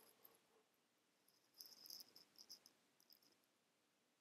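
Near silence, with a few faint high chirps about halfway through.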